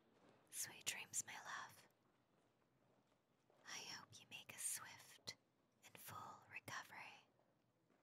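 A woman whispering three short phrases, with brief pauses between them.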